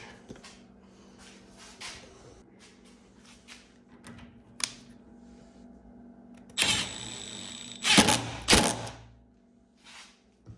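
Hand screwdriver driving a single screw through a CNC Y-rail end plate into the tabletop, setting a pivot point for the rail. Small clicks come first, then about a second of rasping as the screw turns in, then a few sharp knocks near the end.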